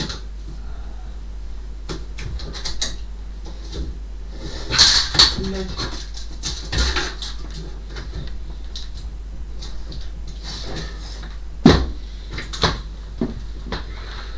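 Things being handled and moved about in the top of a wooden wardrobe: scattered knocks and clicks, a burst of rustling about five seconds in, and one sharp knock a couple of seconds before the end.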